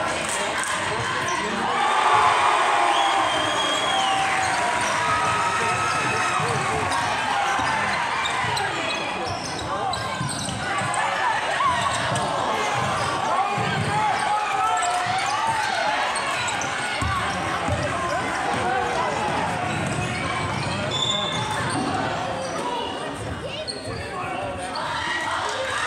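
Basketball game in a gym: the ball bouncing on the hardwood court and a few short high sneaker squeaks, under the chatter and calls of spectators in the stands.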